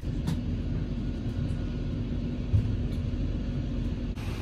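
Steady low rumble of a vehicle heard from inside its cab, with a steady hum running under it.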